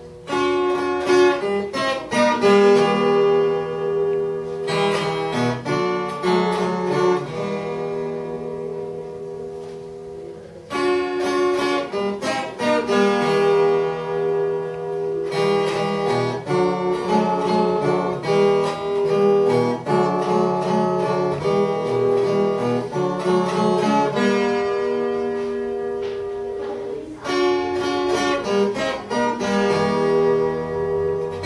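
Solo viola caipira (Brazilian ten-string folk guitar) playing an instrumental piece of plucked melody and chords in phrases, with a short break about ten seconds in.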